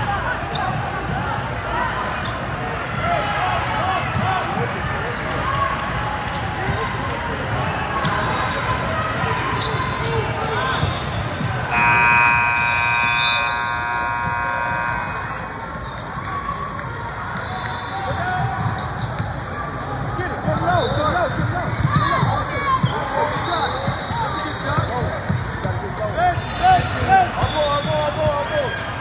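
Basketball game sounds in a large gym: a ball bouncing on the hardwood court amid the chatter of spectators and players. About twelve seconds in, a buzzer horn sounds steadily for about three seconds.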